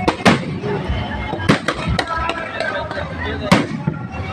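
Aerial fireworks bursting overhead in several sharp bangs, the loudest about three and a half seconds in, over the voices of a watching crowd.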